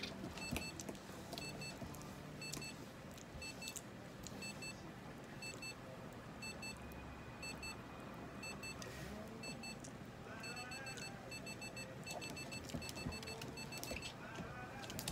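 Electronic device beeping in the background: short, high double beeps repeating rapidly and evenly, pausing briefly about nine seconds in, over faint handling rustles.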